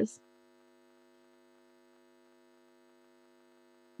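Faint steady electrical hum, a chord of several fixed tones, in a pause between words; the last of a spoken word cuts off just at the start.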